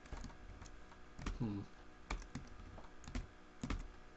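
Computer keyboard keystrokes: a handful of separate key presses at an irregular, unhurried pace while code is being edited, with a short hummed 'hmm' about a second and a half in.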